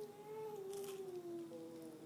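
A toddler's single long sung note, held about two seconds and slowly falling in pitch.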